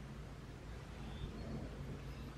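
Quiet background ambience: a faint, steady low hum with light hiss and no distinct events.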